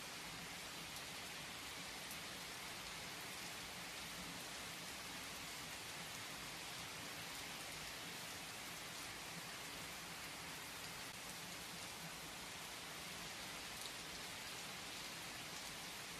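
Steady, soft rain falling: an even hiss with faint scattered drop ticks.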